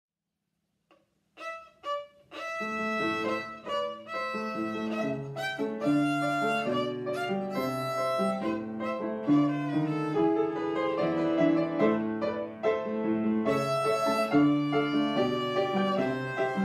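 Violin and upright piano playing a duet. After a second and a half of silence, a few short separate notes sound, then continuous playing from about two and a half seconds in, the bowed violin melody carried over the piano.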